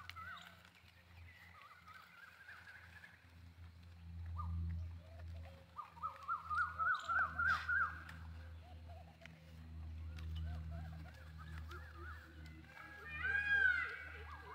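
Birds calling outdoors: a quick run of short rising notes, about four a second, from about six seconds in, and more calls near the end, over a steady low rumble.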